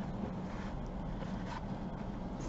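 Steady low background hum with a few faint rustles and taps as fabric trim is handled and pressed onto a lampshade.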